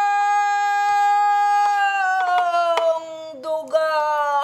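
A woman singing pansori, holding one long full-voiced note steady for about two seconds. The note then sags slowly in pitch and wavers before she starts a new phrase near the end.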